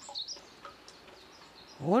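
A small bird chirping in a quick run of short, high notes that stops about half a second in, leaving faint rural outdoor background. A woman's voice starts near the end.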